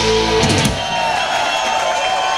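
A live rock band holds its final chord with guitars and drums, ending with a couple of last hits about half a second in. The crowd then cheers and claps.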